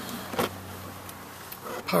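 A single short click about half a second in, over a low steady hum.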